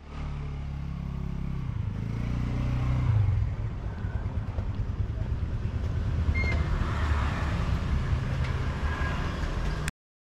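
Motorcycle engine running close by, its pitch and loudness rising over the first three seconds, then settling into a rougher, steadier low rumble; the sound cuts off suddenly near the end.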